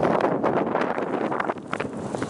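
Wind buffeting the microphone, mixed with irregular crunching of footsteps on loose gravel.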